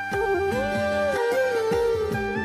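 Background music: an instrumental melody with one long held note that bends up and then falls back, over a steady beat.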